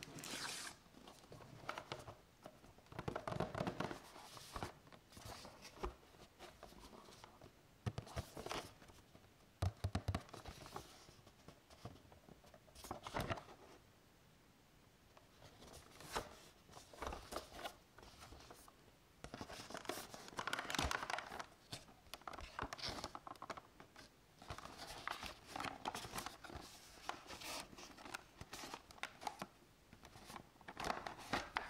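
Cardboard boxes and clear plastic packaging being handled: scattered rustling, scraping and light knocks as items are shifted and a boxed figure is opened.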